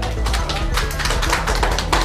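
Scattered hand clapping from a small group, irregular claps throughout, over a steady background music bed.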